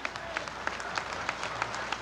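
Audience applauding, a patter of many irregular claps.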